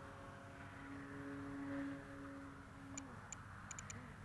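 Distant electric motor and propeller of a 55-inch Skywing Edge RC aerobatic plane, a steady droning tone that swells briefly and then cuts off about three seconds in. A few short, sharp ticks follow near the end.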